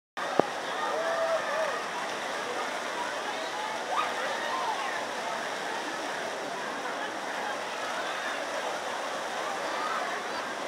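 Steady rush of running water from a garden pond's water features, with a sharp click just after the start and people's voices faintly over it.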